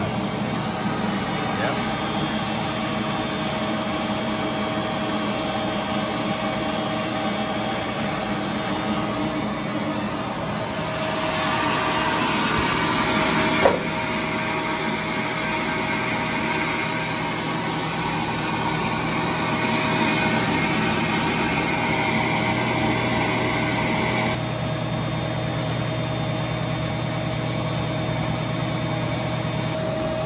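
Fortuna NAF470G band-knife splitting machine running with a steady hum. From about 11 seconds in, the sound grows louder and harsher as heavy conveyor-belt material is fed through and split, with one sharp click partway through, then drops suddenly back to the plain running hum near the end.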